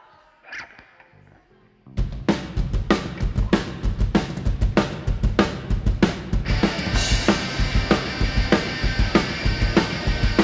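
A live rock band with drum kit, bass and electric guitars starts a song: after a quiet couple of seconds the drums and bass come in with a steady driving beat. About halfway through, the band's sound gets fuller and brighter.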